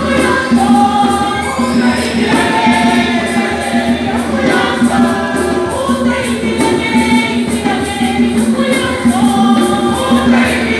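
Church choir of women's voices singing a hymn together, with a steady percussion beat underneath.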